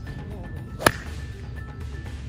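A golf iron striking a ball off grass: a single sharp crack a little under a second in, over steady background music.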